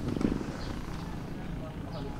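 A person's short, low, rasping vocal sound just after the start, followed by quiet background.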